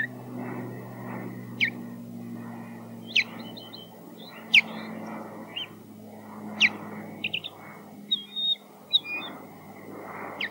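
Osprey giving loud, sharp whistled alarm calls from the nest, one every second or two, then a quicker run of short notes near the end, as it defends the nest against intruding ospreys flying over.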